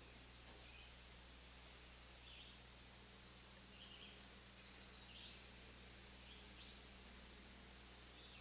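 Faint outdoor bird calls, a handful of short chirps scattered through the pause, over the steady hiss and low hum of the recording.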